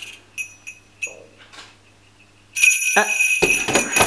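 Strap of jingle bells shaken: a few faint jingles, a quiet pause, then a loud burst of jingling about two and a half seconds in that carries on to the end.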